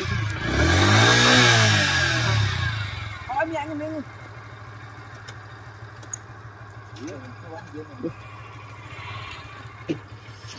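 Motorcycle engine revved once under the load of towing a car on a rope, its pitch rising and falling back over about three seconds, then idling low and steady.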